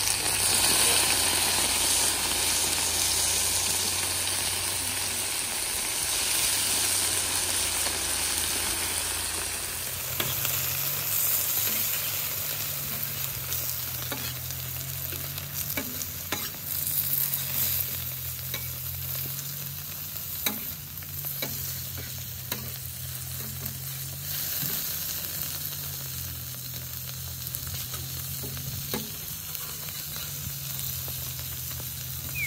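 Birria tacos frying on a steel flat-top griddle, the sizzle loudest in the first ten seconds as chili broth is ladled over the tortillas, then quieter. A metal spatula scrapes and taps on the griddle now and then as the tacos are folded and turned.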